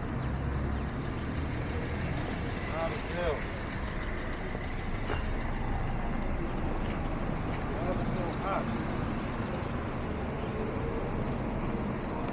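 Cars passing on a busy city street, a steady traffic noise with a low rumble, with people's voices in the background.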